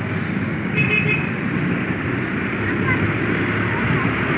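Steady road and engine noise from riding a motorcycle through city traffic, with a short vehicle horn toot about a second in.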